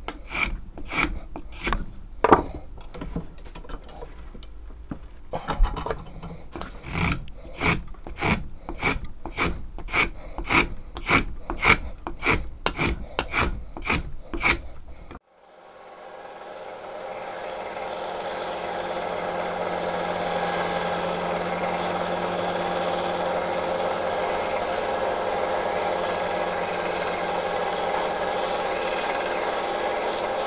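Hand filing a wooden sword handle clamped in a vise: even scraping strokes about two a second, with a short lighter spell early on. About halfway through this gives way to a Scheppach BD7500 electric bench sander that spins up over a few seconds and then runs steadily as the wooden handle is held against its belt.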